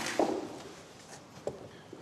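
A man's brief wordless vocal sound, like a short grunt or exhale, just after the start, then quiet room tone with one faint tap about one and a half seconds in.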